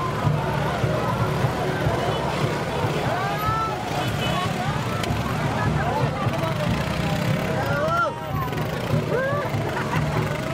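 Dense street crowd: many voices talking and shouting at once, with calls rising and falling in pitch, over a steady low rumble.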